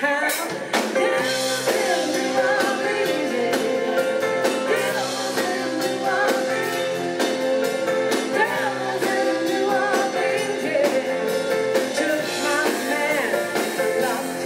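Live rock band in concert: a woman sings lead over electric guitar, bass guitar and a drum kit. A long steady note is held underneath from about a second in until near the end.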